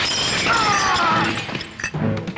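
Film sound effect of a loud crash with shattering, like glass breaking. A falling tone runs through the middle, and the noise eases off briefly near the end.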